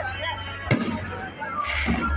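An aerial firework shell bursting, with one sharp bang less than a second in and a short hiss of noise near the end. Through the phone's microphone the bang sounds like a gunshot.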